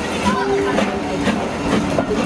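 Passenger coaches rolling slowly past, their wheels clicking over rail joints about twice a second.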